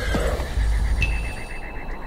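A horse whinnies about halfway through: a high, quavering call lasting about a second, over a low rumbling drone.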